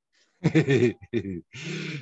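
A man laughing in several voiced bursts, the last one breathy, heard over a video call.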